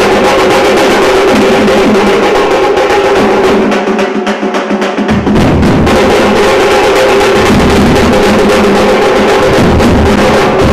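A drum troupe's large bass drum and strapped hand drums playing a fast, driving rhythm. Deep bass-drum beats join in suddenly about halfway through.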